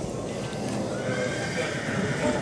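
A horse whinnying, one drawn-out call starting about a second in, over the hoofbeats of a horse cantering on an arena's sand surface.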